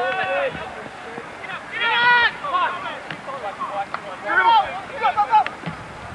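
Short, unintelligible shouts called out across an outdoor soccer field during play, four separate calls, heard at a distance on camcorder audio.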